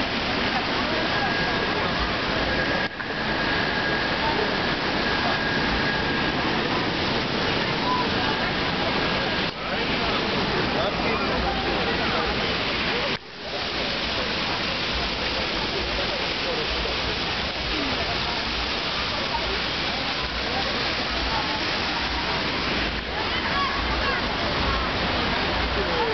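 Fountain jets splashing into a pool, a steady rush of water, with voices of people talking underneath; the sound drops out briefly three times.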